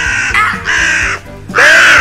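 Harsh, cawing corvid calls, three of them about a second apart, over background music.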